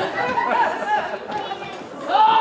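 Several voices talking over one another, with no clear words.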